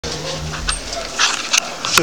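Handling noise: rustling and several sharp clicks and knocks as the camera is moved and table microphones are adjusted. A low hum runs through the first second or so.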